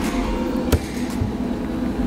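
Steady low machine hum in a workshop, with one sharp click about three-quarters of a second in.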